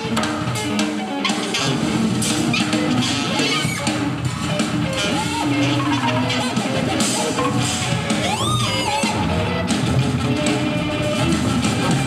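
Live band music: acoustic guitar with a drum kit, played continuously. About eight seconds in, a high note swoops up and falls back.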